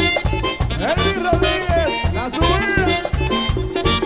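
Live merengue típico band playing an instrumental passage: a diatonic button accordion leads the melody over a fast, steady bass-and-percussion beat.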